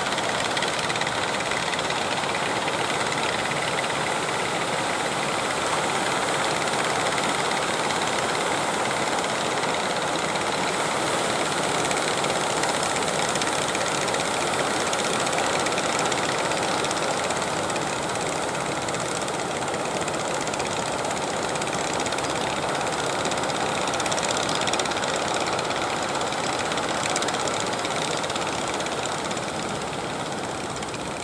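A wooden fishing boat's engine running steadily, mixed with the constant wash of surf breaking on the beach.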